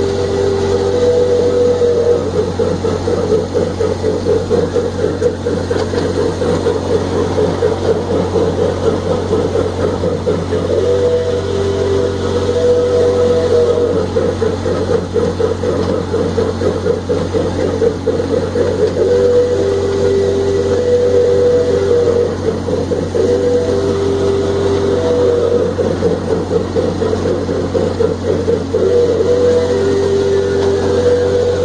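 Miniature ride-on train running steadily, heard from aboard: a continuous low drone with a fine, rapid rattle from the moving train.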